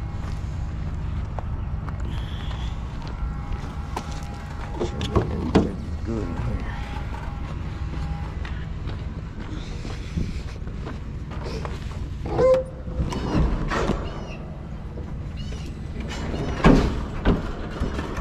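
Steady low rumble of diesel truck engines idling in a truck yard, with footsteps on gravel and scattered knocks. A heavy clunk near the end as the Peterbilt's tilt hood is swung open.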